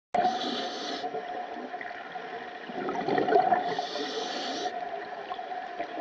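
Scuba regulator breathing heard underwater: a hissing inhalation near the start and another about four seconds in, with bubbling exhaust bubbles between them. A steady hum runs underneath.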